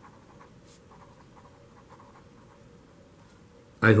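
Faint scratching of a felt-tip marker writing words by hand on paper.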